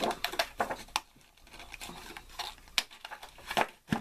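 Handheld lever craft punch cutting a flower shape from green cardstock: sharp clicks of the punch and the paper sheet rustling as it is handled, the clicks mostly in the first second.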